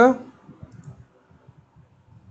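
A man's voice trails off at the very start, followed by faint, irregular clicks.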